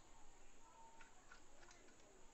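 Near silence, with a few faint ticks as wire ends are handled at the screw terminals of a wall switch unit.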